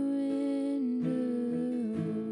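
Slow worship song: a woman's voice hums one long held note that steps down in pitch, over a softly strummed acoustic guitar, with one strum about a second in.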